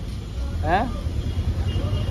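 Low, steady rumble of idling vehicle engines, with one short spoken word less than a second in.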